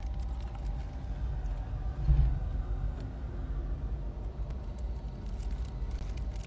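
Steady low rumble inside a car cabin, swelling briefly about two seconds in, with faint clicks of someone chewing a gummy candy.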